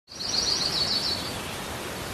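A small bird singing a quick warbling trill for about the first second, over a steady outdoor hiss.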